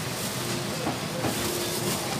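Wire shopping trolley rolling over a tiled floor, its wheels and basket giving a steady rattle with small clicks.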